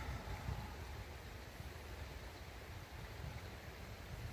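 Steady outdoor background noise: a shallow creek running, with uneven low wind rumble on the microphone.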